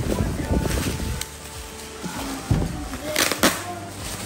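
Plastic bubble-wrap packaging crinkling and rustling as it is pulled and torn off a boxed parcel, with a loud rasping tear about three seconds in. Background music plays underneath.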